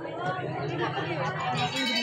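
Several people talking at once, overlapping chatter, with a laugh near the end.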